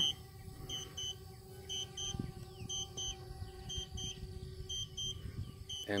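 DJI Spark remote controller beeping its Return-to-Home alert, a quick high double beep about once a second, showing that the drone is flying home. A faint steady hum runs underneath.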